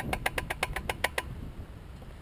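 Loose rear axle of a Honda TRX450R ATV being rocked by hand, its play giving a rapid run of metal clicks, about ten a second, that stop a little over a second in. The axle is loose and works itself loose again after riding, which the owner says he has never been able to stop rattling.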